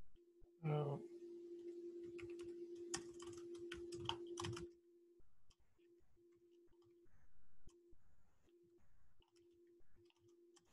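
Computer keyboard typing in quick clicks for a few seconds, over a steady low electronic hum that later cuts in and out. A short voice sound comes about a second in and is the loudest thing.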